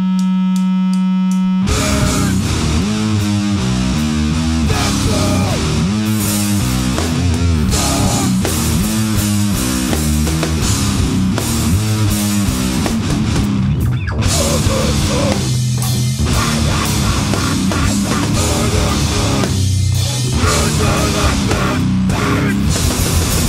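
Loud grindcore/powerviolence: a single steady held note, then distorted guitars, bass and drums crash in together less than two seconds in and play on fast and dense.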